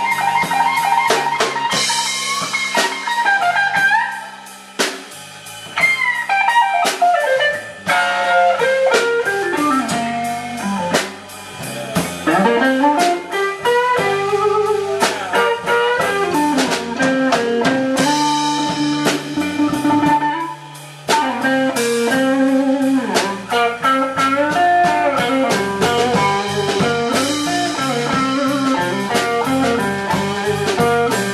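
Live blues band in an instrumental stretch: semi-hollow electric guitar playing a lead line with bent notes over drum kit and bass. The band drops to almost nothing for a moment a few times, near stop-time breaks.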